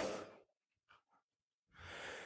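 A man's voice trails off, then near silence, and near the end a faint intake of breath into the microphone.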